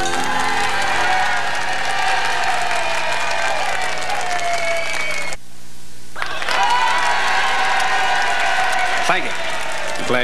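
Studio audience applauding and cheering as a band number ends. The sound drops out for under a second about five and a half seconds in, where the videotape is edited, and then the applause resumes.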